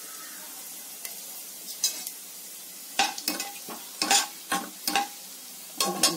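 Whole spices sizzling softly in hot ghee in a pressure cooker. About halfway in, a perforated metal ladle stirs them, scraping and clinking against the pot several times.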